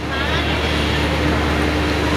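Audience applauding, a steady even wash of many hands clapping, with a faint steady hum underneath.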